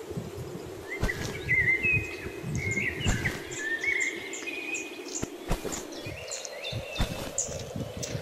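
Birds singing: a warbling whistled song in the first half, then short high chirps. A steady hum runs underneath, and there are a few scattered knocks.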